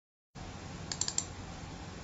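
A few quick clicks at the computer about a second in, over a steady microphone hiss with a low hum.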